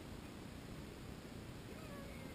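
Steady wind rumble and hiss on an outdoor microphone, with a faint, short high-pitched call near the end.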